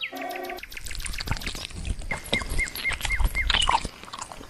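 Liquid poured from a clay jug into a tall glass, a steady trickling, splashing pour as the glass fills. A short tone sounds at the very start, and five short, evenly spaced chirps come in the middle.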